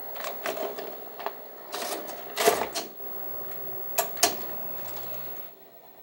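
A video cassette pushed into a professional S-VHS video deck: a string of clicks and clunks as the tape slides in and the loading mechanism takes it, loudest about halfway through, then two sharp clicks about four seconds in, over the deck's steady hum.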